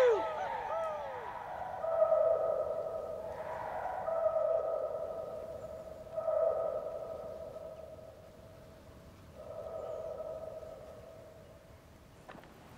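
A man's voice giving four long, held calls a couple of seconds apart, each swooping down onto one steady note and fading, each quieter than the last.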